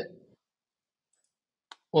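A single short computer mouse click near the end, in a near-silent pause between stretches of a man's speech.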